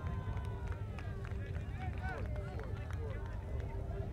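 Open-air field sound from a beach court: distant voices talking in short broken snatches over a steady low rumble, with a faint steady hum underneath.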